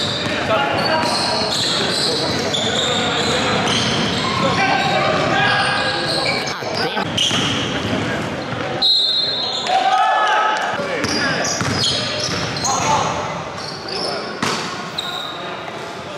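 Basketball bouncing on a hardwood gym floor during a game, with players' voices calling out, echoing in a large hall.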